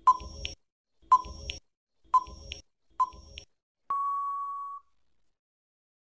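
Quiz countdown timer sound effect: four short beeps about a second apart, then one longer, steady beep of about a second that marks time up.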